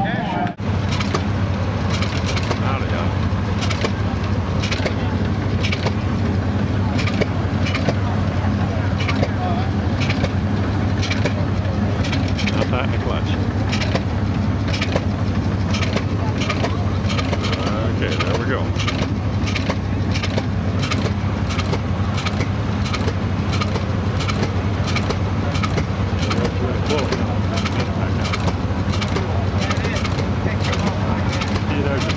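A Massey-Harris stationary gas engine running under load, firing in a regular beat of sharp knocks a little under two a second. It drives a threshing machine by flat belt, and a steady low hum of machinery runs underneath.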